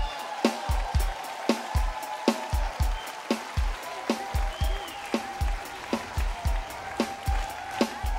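Wedding band music without singing: a kick-drum beat about twice a second under a long held note.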